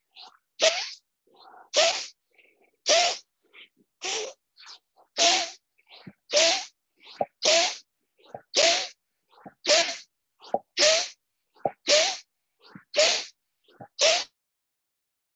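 A person doing a rhythmic forceful-breathing pranayama: sharp, loud exhalations about once a second, a dozen in all, each followed by a quicker, softer inhalation.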